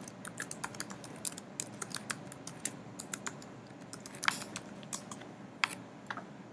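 Computer keyboard being typed on: quick, irregular keystrokes, with a couple of louder key strikes about four and a half seconds in and near the end.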